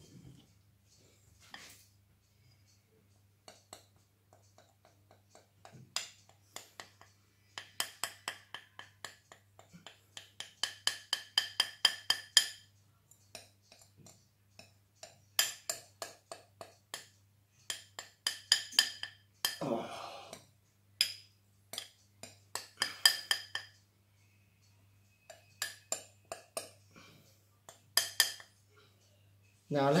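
Metal spoon scraping and tapping against the inside of a glass mixing bowl in quick runs of strokes, each stroke ringing briefly, as melted chocolate is scraped out of the bowl. The longest runs come a third of the way in and again past the middle.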